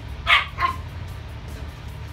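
Puppies yipping: two short, high barks in the first second, over steady low background music.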